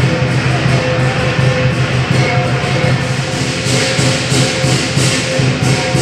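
Lion-dance percussion ensemble playing loudly: a large drum beating in the low register under dense, continuous crashing of hand cymbals and gong.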